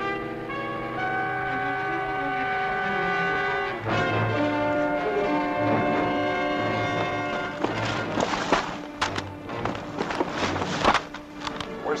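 Dramatic orchestral underscore of held brass chords, with a fresh chord coming in about four seconds in. The music thins after about eight seconds, and a run of short, sharp knocks and rustles takes over.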